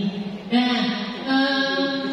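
A woman's voice amplified by a handheld microphone, holding a long drawn-out vowel at a steady pitch, a spoken hesitation between phrases.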